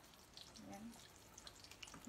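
Faint simmering of a steel pot of beef boiling in water, stirred with a wooden spoon.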